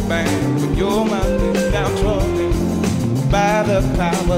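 Live soul-rock band playing with bass, drums and guitar under a steady beat, and a voice singing long wavering notes over it.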